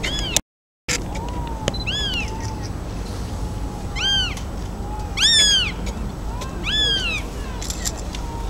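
A hawk calling: five short, mewing calls about a second or two apart, each rising then falling in pitch, the loudest about five seconds in.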